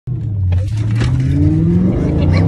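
Dodge Challenger Hellcat's supercharged V8 at full throttle in a roll race, its note rising steadily in pitch as it pulls through a gear and dropping at an upshift near the end.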